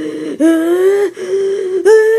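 High-pitched wordless vocal squeals from a person's voice: a string of held cries about half a second each with short breaks between, each rising slightly in pitch before dropping off.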